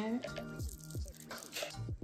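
Fresh ear of corn snapped in half by hand, a crack about one and a half seconds in, over background music.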